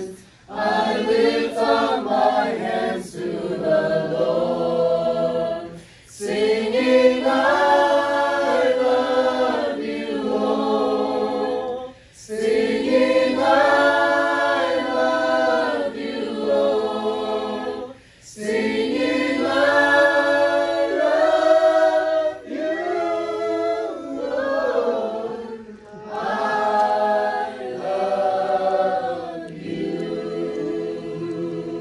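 A group of voices singing together in harmony, in phrases about six seconds long with a brief pause for breath between them.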